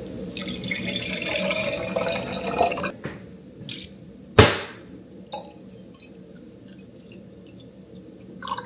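Fresh citrus juice poured into a stemmed wine glass, splashing for about three seconds. A single sharp glass clink comes about four and a half seconds in, then a quieter trickle.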